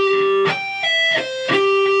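Clean electric guitar playing a C major arpeggio slowly, one note at a time. A held note rings until about a quarter second in, followed by three quick notes stepping down (a pull-off on the high E string, then the B string), then a lower note on the G string that rings on.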